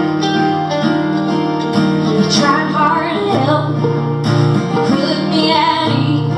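Live acoustic music: an acoustic guitar played with a second plucked string instrument, the chord changing about halfway through and again near the end.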